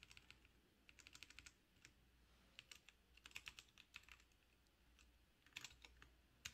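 Faint computer keyboard typing: several quick runs of keystrokes with short pauses between them, as a word in a text file is deleted and retyped.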